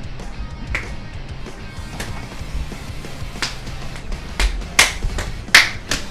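Background music with a steady low bass line, over which sharp slaps sound irregularly, few at first and quicker and louder in the last two seconds: hands and forearms striking and blocking in a play-sparring match.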